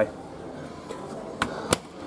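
Two sharp clicks close together about a second and a half in, as the door of a front-loading washing machine is handled, over a low steady background hum.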